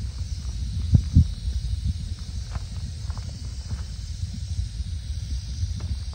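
Rattlesnake hidden in a bush, rattling as a steady high buzz, a defensive warning. Two short thumps sound about a second in.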